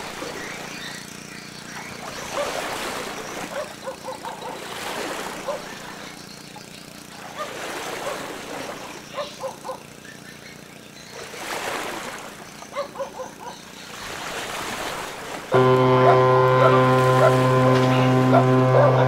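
A large cargo ship's horn sounds suddenly about 15 seconds in: one loud, deep, steady blast held to the end. Before it there is a low hum under a rushing noise that swells and fades every few seconds.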